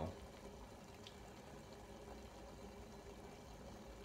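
Water boiling gently in a glass saucepan on a gas burner, faint and steady.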